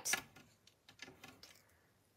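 Quiet room tone with a few faint, light clicks about a second in.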